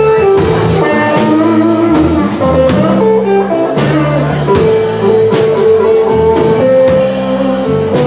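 A live band plays an instrumental passage led by electric guitar: held melody notes stepping over a moving bass line, with occasional percussive hits.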